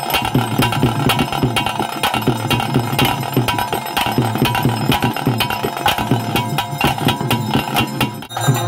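Live traditional ritual music for a Tulu bhuta kola: fast, steady drumming with a held wind-instrument tone over it.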